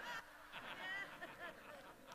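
Faint audience laughter: short, wavering pitched voices in scattered bursts.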